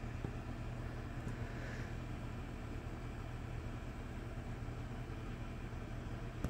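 Fire engine's diesel engine running steadily, a low even hum.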